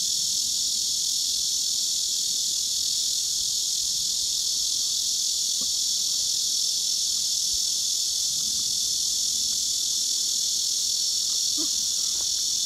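A steady, high-pitched chorus of insects that drones on without a break.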